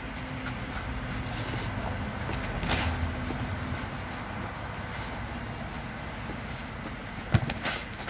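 Inflatable plastic toy hammers striking during a mock fight: a few light hits over a steady low outdoor rumble, with one sharp knock near the end.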